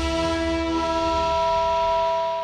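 Closing theme music of a TV programme ending on a long held chord. The low bass drops out about a second and a half in, leaving the upper notes sustained.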